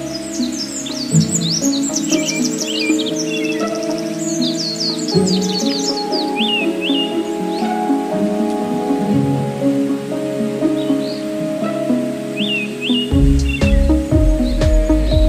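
Background music of slow, sustained notes, with small birds chirping and trilling over it, busiest in the first six seconds and then only a few short calls. A low rumble comes in near the end.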